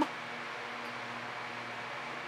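Steady background hiss with a faint low hum underneath; no distinct event.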